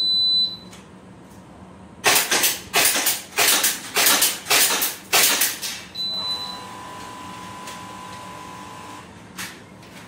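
Shot timer's short high start beep, then after about two seconds a rapid run of sharp cracks, about two a second for some three seconds, as two shooters fire airsoft pistols at plate targets. A second short high beep sounds about six seconds in, ending the six-second string, followed by a steady lower tone for about three seconds.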